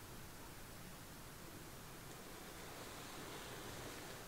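Faint steady hiss of room tone, with no distinct sound event.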